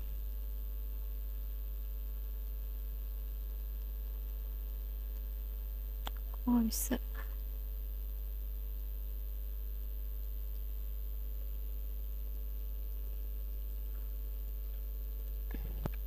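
Steady low electrical mains hum with faint higher tones, interrupted once about six and a half seconds in by a short voice sound.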